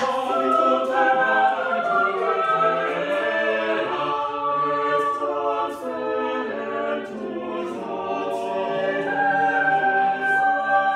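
Small mixed choir singing a cappella in several parts: sustained chords that move from one harmony to the next, with crisp sibilant consonants cutting through now and then.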